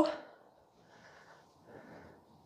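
The end of a spoken word, then two faint breaths from a woman exercising, about a second in and near the end.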